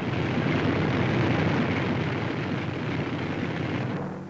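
B-24 Liberator bombers' propeller engines running, a steady, coarse engine noise with no clear pitch.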